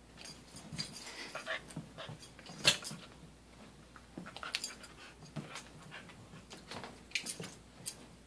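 A dog and a cat play-fighting, with irregular bursts of scuffling and dog sounds. The loudest is a sharp one a little under three seconds in.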